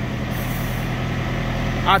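Steady low diesel drone from idling semi trucks and reefer trailer refrigeration units.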